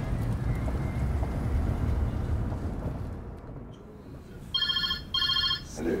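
Low rumble of a car's cabin on the move for the first few seconds, fading out; then a telephone rings twice near the end, two short trilling bursts about half a second each.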